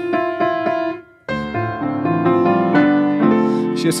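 Piano playing: a held chord with a few notes struck over it dies away about a second in, then after a brief pause a new chord is struck and a melody line moves over it.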